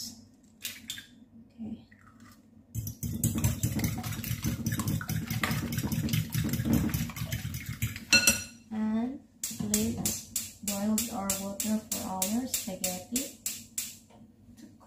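Fork beating raw eggs in a glass bowl: a fast, dense clatter of metal against glass begins about three seconds in. After a short break near the middle, the beating goes on as separate clinks, about four a second, with a voice talking over them.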